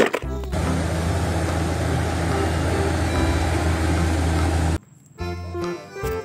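A steady engine-like rumble, lasting about four seconds and cut off suddenly, between short stretches of background music.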